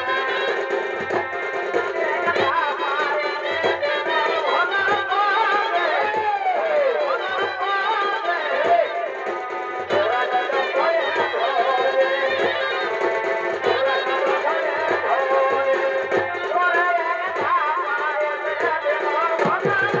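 Purulia Chhau dance music: a wavering, bending melody carried over a steady drumbeat.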